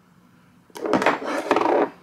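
Hands rubbing together as cream is spread over them: a loud rough rubbing noise lasting just over a second, starting about three quarters of a second in.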